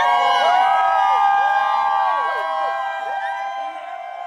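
A crowd of guests cheering and whooping, many voices overlapping in rising and falling shouts, easing off toward the end.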